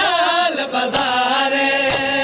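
A man's voice chanting a noha, the Shia mourning lament, in long held notes; the note dips in pitch about half a second in and then holds. A single sharp thump comes near the end.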